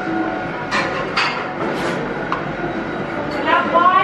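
Background chatter of other customers in a busy bakery, with a few short, sharp rustles or clicks in the first two seconds and a voice rising near the end.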